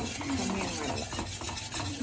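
Wire whisk scraping rapidly against the bottom of a stainless steel kadai, whisking a thick butter-based white sauce base over the flame. It makes a continuous rasping sound of many quick strokes.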